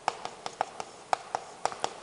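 Chalk tapping and striking a chalkboard during writing: a quick run of short, sharp taps, about five a second.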